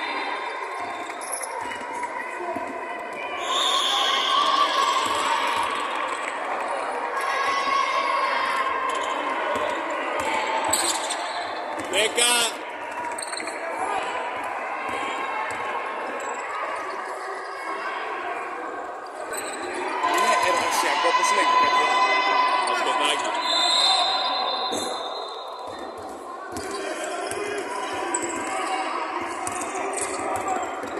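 Basketball bouncing on a hardwood court during live play, irregular dribbles and thuds, mixed with players' voices calling out in a large, echoing hall.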